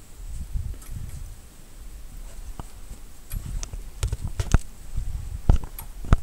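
A run of irregular sharp clicks and knocks over a low rumble, mostly in the second half.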